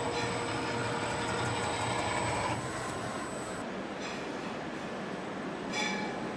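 Rotary inkjet printer running as it prints on a turning stainless steel cup: a steady motor whir with a whine, louder for the first two and a half seconds, then a lower steady hum, with a short whine near the end.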